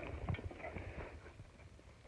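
Footsteps and knocks on dry sticks and driftwood, with some crackling of brush, loudest at the start and fading over the two seconds.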